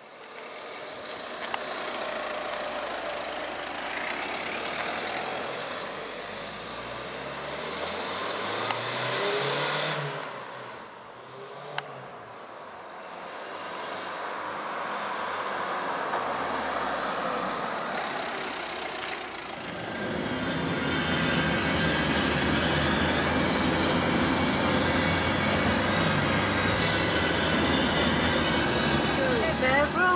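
Ford hatchback's engine changing pitch as it pulls away and drives along a street, then steady engine and road noise from inside the moving car from about two-thirds of the way in.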